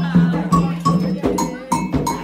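A handheld metal ritual bell (adjá) rung several times in quick strokes over drum beats, with chanting, in Candomblé music.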